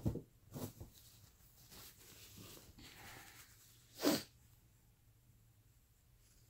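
One short, sharp burst of a person's breath, like a sneeze or snort, about four seconds in, with a few faint short sounds near the start.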